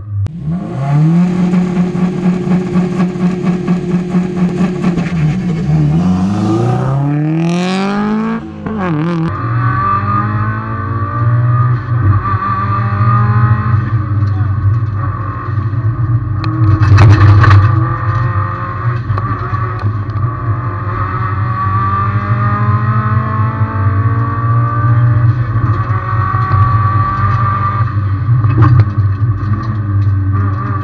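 Subaru Impreza WRX STI's turbocharged flat-four engine heard from inside the cabin: held at steady revs for a few seconds, then revving up and down sharply through the first gear changes as the car launches, then running hard at high revs with shifts for the rest of the climb. A brief louder rush of noise comes near the middle.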